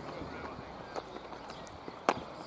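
Quiet open-air ambience across a cricket field, with a few faint soft knocks and ticks during the delivery.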